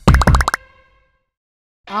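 Edited-in transition sound effect: a quick run of pops packed into half a second, its ringing tone fading out by about one second in, then dead silence.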